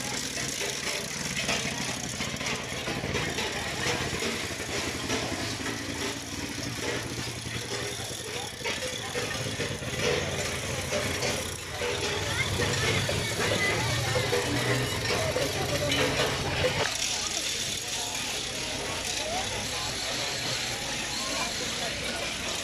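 Outdoor crowd chatter, many voices talking at once, with a low steady hum underneath that cuts off about 17 seconds in.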